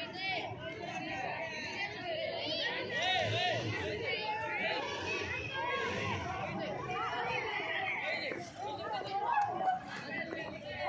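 Overlapping chatter of several voices talking at once, with no single clear speaker.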